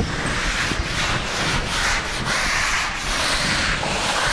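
Repeated rubbing strokes on a hard surface, each swelling and fading over roughly a second.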